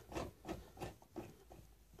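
A few faint clicks and rubs of metal hydraulic fittings being handled and threaded together by hand on a hydraulic pump.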